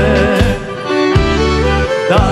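Live band playing an instrumental passage of a Macedonian pop-folk song, violin and accordion over a pulsing bass line.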